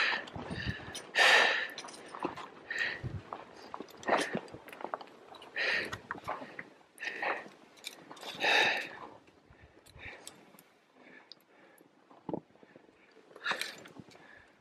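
Hard, rhythmic breathing of a climber working up a fixed rope, about one breath every one and a half seconds, dying away after about ten seconds. Two short faint clicks follow near the end.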